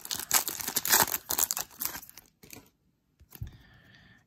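A trading-card pack's foil wrapper being torn open and crinkled by hand: a rapid crackle that stops about two seconds in, followed by a couple of faint clicks.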